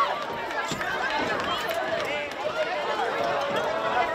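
Many overlapping voices of a group of teenage girls talking and calling out at once: indistinct chatter with no single voice standing out.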